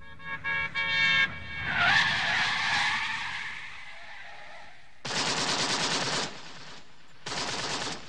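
Recorded gangster-film sound effects: a car skidding, then two bursts of machine-gun fire, the first about five seconds in and lasting a little over a second, the second starting near the end.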